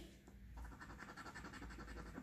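Coin scratching the latex coating off a scratch-off lottery ticket: faint, quick, rapid scraping strokes that start about half a second in.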